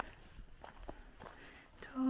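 Faint footsteps of a person walking at a steady pace on a rural track, about three steps a second.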